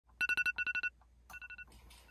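Electronic wake-up alarm beeping in rapid groups of four short high beeps: two loud groups, then a fainter group about a second in.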